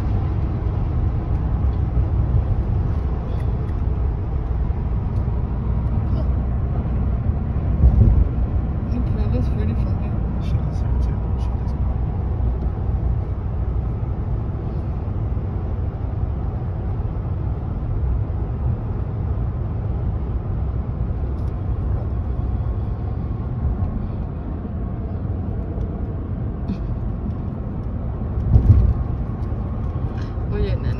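Steady road and engine rumble heard from inside a pickup truck's cabin while driving at highway speed, with two brief low thumps, one about a quarter of the way in and one near the end.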